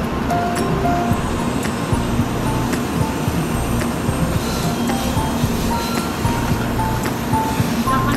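Instrumental background music: a light melody of short notes over a steady low bed.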